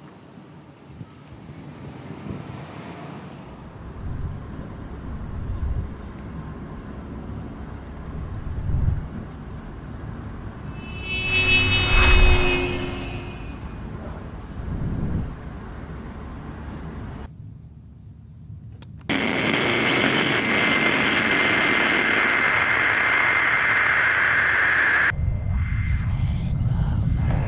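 A low rumble that swells and fades, with a loud passing whoosh carrying a fading pitched tone about halfway through. About three-quarters in, car radio static starts: a loud, steady hiss with a thin whistle running through it, which cuts off suddenly shortly before the end.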